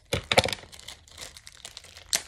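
Foil wrapper of a trading-card booster pack being crinkled and torn by hand as it is worked open: a loud burst of crackling crinkles in the first half second, then softer scattered crackles. The pack is hard to open.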